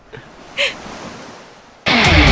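Sea surf washing onto a beach, an even hiss, with one short sound just over half a second in. Loud rock music cuts in suddenly near the end.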